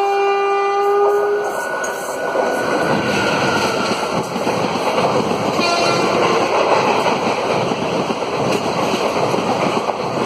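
A train horn sounds a steady chord and cuts off about a second and a half in. Then an express train hauled by a WAP4 electric locomotive rushes past on the adjacent track, its coaches and wheels making a loud, steady roar close by.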